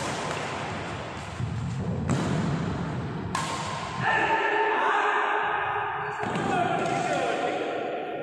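Badminton rackets hitting a shuttlecock in a doubles rally: several sharp smacks in the first half. From about halfway, players' voices call out, with one more knock near the end.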